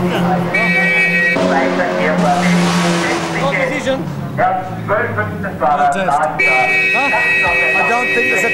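Indistinct men's voices talking, with a steady high-pitched tone that sounds briefly near the start and again from about six and a half seconds. Background music runs under the first few seconds and fades out.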